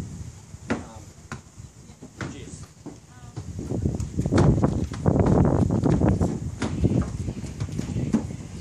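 A soccer ball being kicked and bouncing on a wooden deck, with hollow knocks and scuffing footsteps on the boards. From about four seconds in, a louder, denser low rumble joins the knocks.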